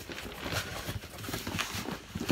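Cardboard shipping box being handled and moved: a run of light, irregular knocks and scuffs.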